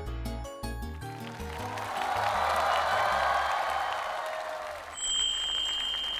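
Studio audience applauding over upbeat background music; the clapping swells and fades. About five seconds in a steady high electronic tone from a transition sound effect comes in.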